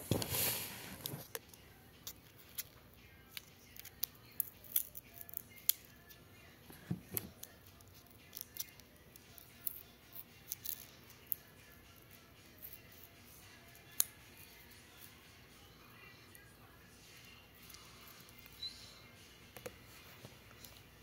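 Scattered light clicks and taps of hard plastic tubs and lids being handled on a table, with a brief rustling handling noise in the first second and a dull thump about seven seconds in.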